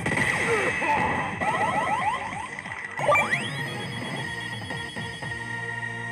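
Electronic game sound effects from a Street Fighter V pachislot machine: a busy run of hit effects and a quick series of rising chirps, then about three seconds in a rising sweep that settles into a steady held tone as the machine moves into its bonus zone.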